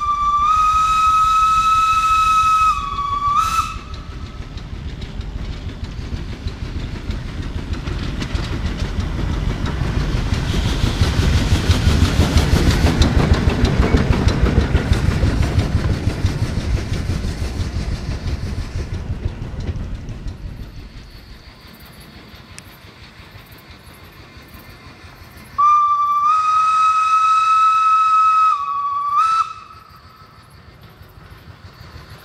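SLM H 2/3 rack steam locomotive whistling: a long steady blast of about three seconds, then a short toot. The train then passes, its noise swelling to loudest around the middle and fading away. Near the end the whistle sounds again, a long blast and a short toot.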